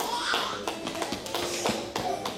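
Scattered light taps and knocks from children's footsteps and shuffling on a hall floor as they move about.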